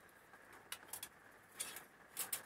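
A few faint, light clicks and taps from a steel tape measure being held and handled against the microwave frame, in a quiet room.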